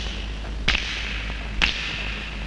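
Low steady hum with two sharp knocks about a second apart.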